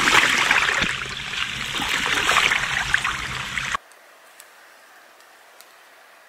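Water pouring and splashing off a rain-soaked bivvy bag into a puddle on the ground. It cuts off suddenly about four seconds in, leaving a faint quiet background.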